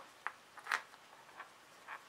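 A few short, faint rustles and soft clicks of fabric and zipper tape being folded and pressed by hand.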